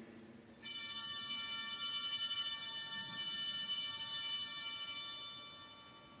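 Altar bells (Sanctus bells) rung at the elevation of the chalice after its consecration: a bright, sustained ringing of several high tones that starts about half a second in and fades out near the end.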